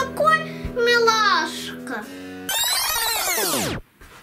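A child singing over background music. About two and a half seconds in, a falling-pitch sweep sound effect lasts about a second and then cuts off suddenly.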